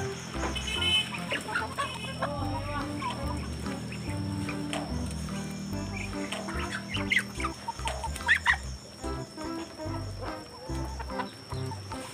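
Chickens clucking while they feed, over background music with a steady bass line. A few sharp taps stand out about seven to eight and a half seconds in.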